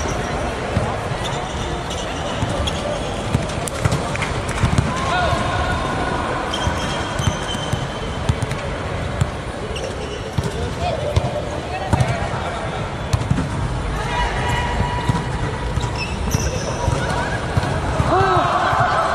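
Volleyball rally: sharp slaps of hands and forearms on the ball through serves, passes, sets and hits, with short squeaks of shoes on the court floor between them.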